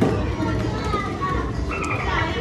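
Busy amusement-arcade din: children's voices and chatter mixed with short electronic tones from the game machines over a constant low hum.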